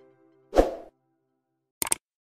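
The last notes of a musical logo sting fade out, then a short sound-effect hit lands about half a second in. Near the end come two quick mouse-click sound effects as an animated cursor clicks a Subscribe button.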